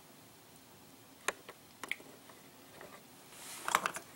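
A few faint clicks and knocks of the removed cylinder head of a Predator 212cc Hemi engine being picked up and handled, with a short cluster of clicks near the end.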